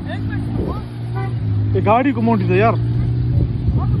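Lexus LS460's V8 engine held at steady high revs while the sedan, stuck in sand, is dragged forward on a tow strap; the engine note drops away just before the end. Voices shout over it briefly about two seconds in.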